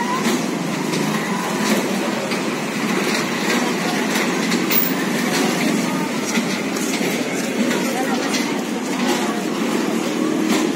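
Busy fairground din: a crowd's mixed voices over a steady rumble of ride machinery.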